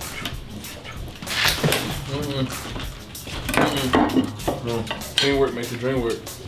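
Kitchen knife chopping peppers on a cutting board: irregular sharp knocks and taps with clinks of utensils, with brief low voices in between.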